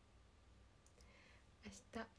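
Near silence: room tone with a faint click a little under a second in, then a woman's voice resumes near the end.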